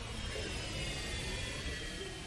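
Jet airplane flying past: a steady rushing roar with high turbine whines that slowly fall in pitch, swelling in at the start and easing off near the end.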